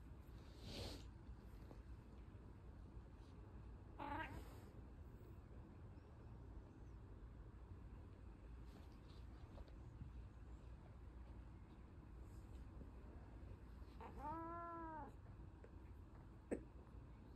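Brown tabby-and-white domestic cat meowing twice in a quiet room: a short call about four seconds in, and a longer meow near the end that rises and then falls in pitch.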